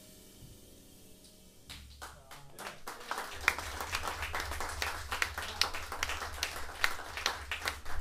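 The last chord of a jazz piano trio dies away, then a small audience starts clapping about two seconds in, the applause building and carrying on.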